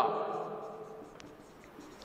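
Faint sound of a marker pen writing on a whiteboard, with a small click about a second in.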